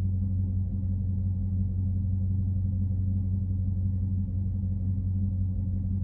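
Steady low drone of a car idling, heard inside the cabin, with a constant hum and no changes in pitch.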